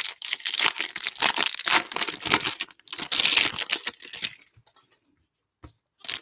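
Foil trading-card pack being torn open and crinkled in the hands: a dense run of crackling and tearing that is loudest about three seconds in and stops at about four and a half seconds. One small click follows near the end.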